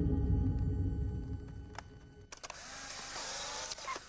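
Low droning ambient music fades away over the first two seconds. About halfway through, a whirring, hissing mechanical sound comes in, runs for about a second and a half and stops suddenly.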